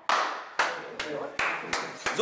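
Hands clapping: about five sharp claps, roughly half a second apart and coming slightly faster, with men's voices murmuring underneath.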